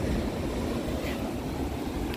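Steady rush of surf breaking on a rocky shore, with wind rumbling on the microphone.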